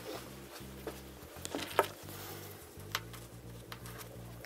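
Hands working fabric on a worktable: faint rustling with a few small clicks and taps, the sharpest a little under two seconds in, as a tape measure and a marker pen are set down on the cloth.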